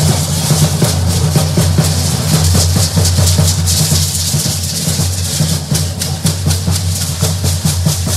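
Drum beating a fast, steady rhythm for a troupe of matachines dancers, with dense rattling and the dancers' steps layered over it.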